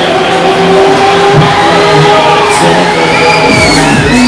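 Loud fairground ride music playing from the Break Dancer ride's sound system, with riders screaming over it in the second half.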